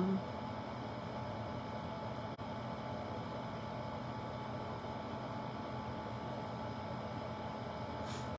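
Steady room noise: an even low hum and hiss with no speech, briefly dipping a little over two seconds in.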